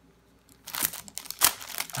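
Clear plastic sleeve crinkling and rustling as a thin metal stencil is pulled out of it by hand, a run of irregular crackles starting about half a second in, loudest about a second and a half in.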